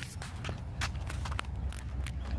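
Footsteps on a concrete sidewalk, a few uneven steps, over a low steady rumble.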